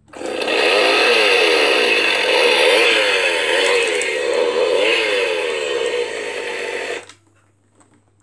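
Battery-powered plastic animated chainsaw prop switched on: a loud chainsaw-revving sound whose pitch rises and falls over and over, with the prop's blades spinning round. It cuts off by itself about seven seconds in, the prop's automatic shut-off that saves battery.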